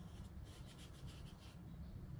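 Faint, rapid scratching of an ink brush's bristles across paper: a quick run of short strokes that stops about a second and a half in.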